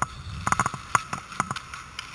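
Hockey sticks, puck and skates clacking on rink ice: an irregular run of sharp clacks and taps, several a second.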